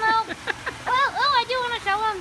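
A high-pitched voice laughing and giving short vocal exclamations, the pitch bending up and down in quick bursts.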